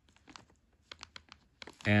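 Pen writing figures on paper: a scattering of short, dry ticks and scratches, with a voice starting just at the end.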